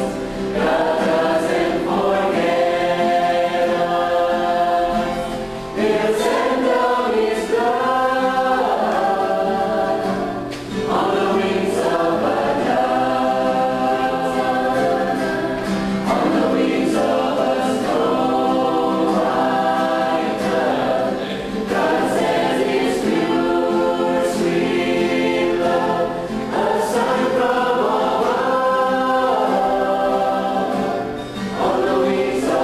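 A mixed choir of men and women singing a sacred song in long sustained phrases, with brief pauses for breath between phrases every few seconds.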